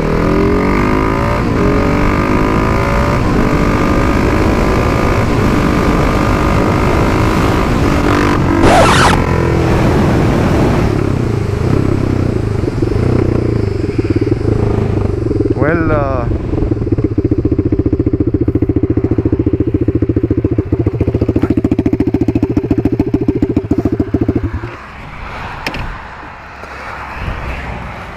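Husqvarna 701's big single-cylinder engine running loud through an Akrapovic exhaust with the dB killer removed, revving up and down under way, with a sharp bang about nine seconds in and a quick rev later. It then runs steadily until the sound falls away abruptly near the end. The badly fitted silencer works loose during this ride.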